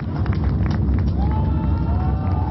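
Steady low rumble of the LVM3 rocket's twin S200 solid-fuel boosters burning as it climbs after liftoff.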